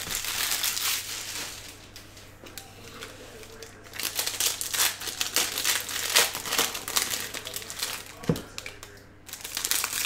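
Foil wrapper of a Bowman Jumbo baseball card pack crinkling as it is torn open and handled, in two spells: one in the first second or so, then a longer run of crackles from about four seconds in. A single soft knock about eight seconds in.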